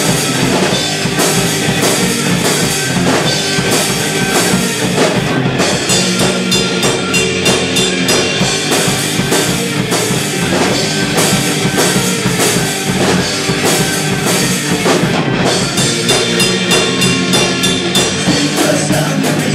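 Live rock band playing an instrumental stretch between vocal lines: electric guitars, bass guitar and a drum kit keeping a loud, steady driving beat.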